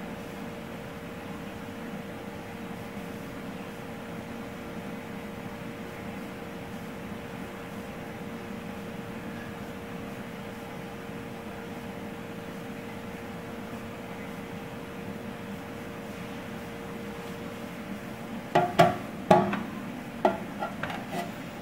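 A steady machine-like hum with a faint steady tone, broken near the end by a few sharp knocks or taps, which are the loudest sounds.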